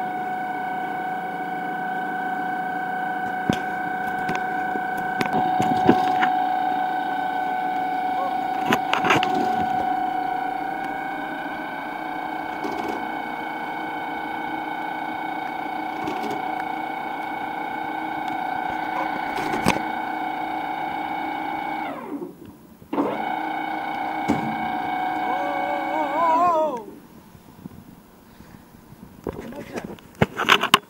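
Ship's rescue-boat davit winch heaving the boat up: a steady machine whine with a few knocks, stopping briefly past the middle, starting again, then winding down with a falling pitch and stopping shortly before the end.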